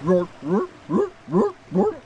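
California sea lions barking from a haul-out rock: a run of about five loud barks, a little over two a second, each rising sharply in pitch.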